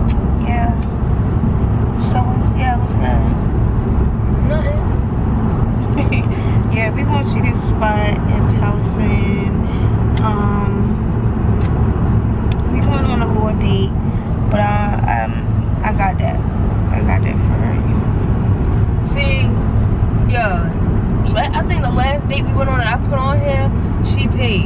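Steady low rumble of road and engine noise inside the cabin of a moving car, with faint voices over it.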